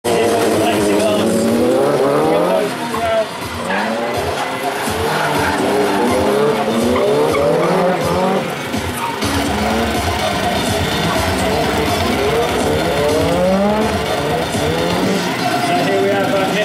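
Drift cars, among them a Nissan S14, running hard through a course with their engine note rising and falling again and again, with tyre squeal.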